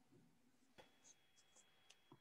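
Near silence: room tone with a faint click just under a second in and a few soft ticks after it.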